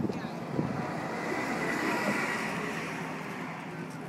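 A road vehicle passing by on the bridge, its noise swelling to a peak about halfway through and then fading, over faint crowd chatter.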